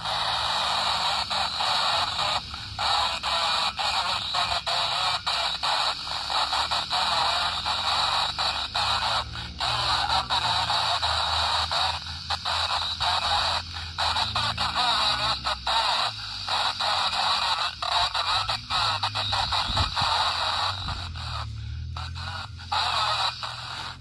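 Static hiss from a RadioShack handheld CB radio's speaker, tuned to channel 34, with no clear station coming through. The noise breaks off in many brief gaps. It is the channel he found had the least noise.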